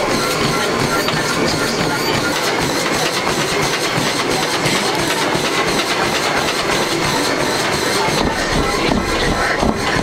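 A person running on a treadmill: steady belt and motor noise with the rhythmic thud of quick footfalls on the deck.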